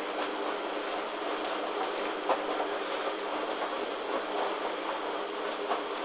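Hoover DYN 8144 D front-loading washing machine turning its drum with a load of laundry during a wash: a steady motor hum and churning, with scattered clicks and a sharper knock about two seconds in.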